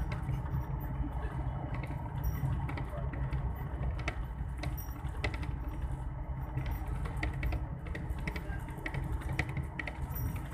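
Inside a moving vehicle: a steady low engine and road rumble with frequent light, irregular rattling clicks from the body and fittings.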